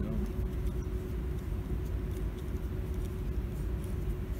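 Steady low background hum with a faint steady tone, and a few faint small ticks of a screwdriver working a brass terminal screw on a toggle switch.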